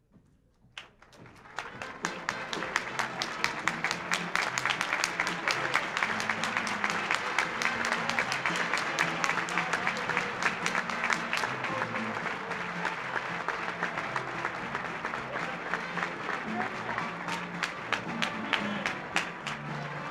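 An audience starts applauding about a second in and keeps up steady, loud clapping, with music playing underneath.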